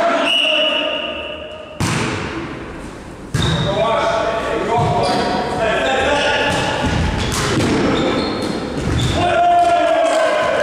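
Volleyball rally in an echoing gym: sharp smacks of hands striking the ball, the first about two seconds in and another a second and a half later, with more hits and players' shouted calls through the rally.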